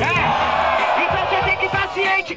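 Hip hop beat of a freestyle rap battle, with an MC's voice and a crowd shouting over it.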